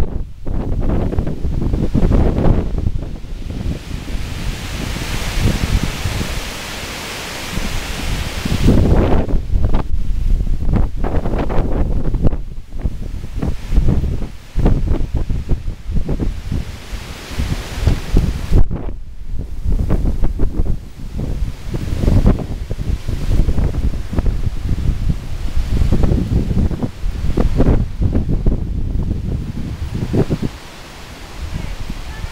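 Strong, gusty storm wind buffeting the microphone in uneven rumbling blasts, with a steadier rushing hiss of wind through the trees about four to eight seconds in.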